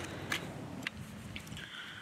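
Faint handling noise: soft rustling with a few small clicks, as hands handle the knife and a length of paracord.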